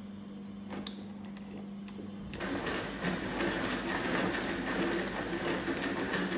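A faint steady hum with a few light clicks. Then, from about two and a half seconds in, a hand-cranked manual food chopper is turned, its blades whirring and clattering as they chop grilled peppers and tomatoes.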